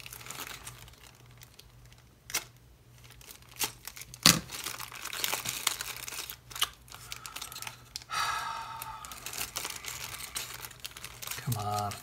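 A small plastic parts bag crinkling and a label sticker sealed over its opening being picked at and peeled back, with scattered crackles and a sharp snap about four seconds in.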